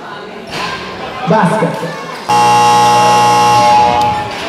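A basketball game buzzer sounds one steady, loud buzz of about a second and a half, starting a little after two seconds in and cutting off sharply. Loud voices shout just before it.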